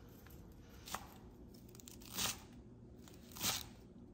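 Two short, crisp crunches of fresh green stems about a second apart, after a faint click.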